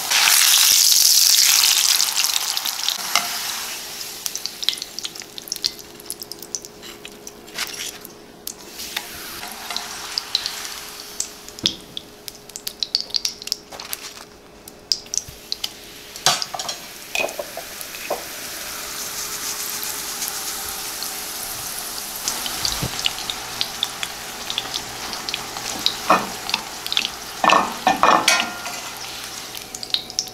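Corn tortillas sizzling in hot oil in a skillet: a loud hiss as a tortilla goes in that dies down over a few seconds, then swells again later on. Sharp clicks and taps of metal tongs against the pan run between.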